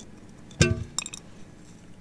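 A hand knocking against a table microphone stand: one loud thump with a short metallic ring about half a second in, then a quick cluster of light clicks.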